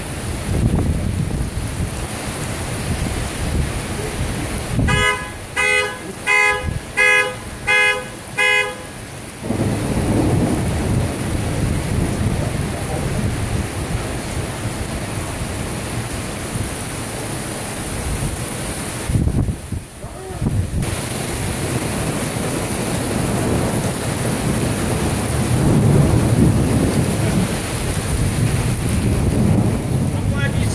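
Torrential rain pouring steadily, with low rumbles of thunder, swelling louder a little before the end. About five seconds in, a horn sounds six short blasts in quick succession, roughly two every second and a half.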